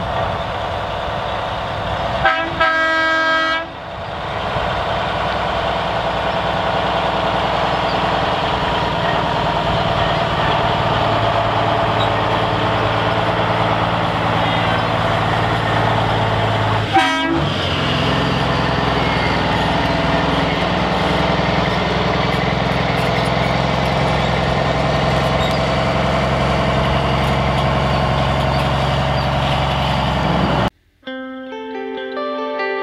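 Kenworth T2000 semi's diesel engine running steadily as the truck pulls its fifth-wheel trailer slowly past, with one blast of its horn about two seconds in, lasting about a second and a half. A brief sharp sound comes about halfway through.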